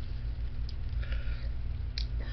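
Steady low hum of a running electric box fan, with a short faint sniff about a second in.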